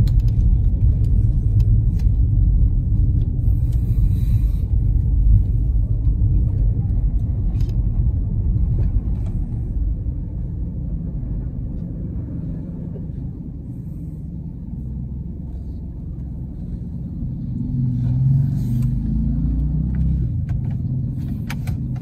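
Low, steady rumble of a car's engine and tyres heard from inside the cabin as it moves slowly along, dropping off a little past the middle and building again near the end.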